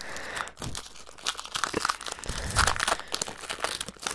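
Foil wrapper of a Pokémon trading card booster pack crinkling and crackling irregularly as hands pull it open.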